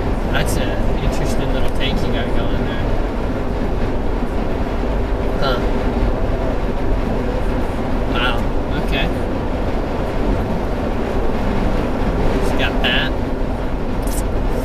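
Steady road and engine noise heard from inside a car's cabin while driving at highway speed, with a few short bits of voice over it.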